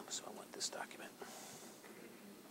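Quiet whispered speech, a few hushed words with sharp hissing 's' sounds in the first second or so.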